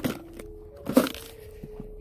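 Faint, steady squeak from an old fishing rod and reel that needs grease, with a sharp click about a second in.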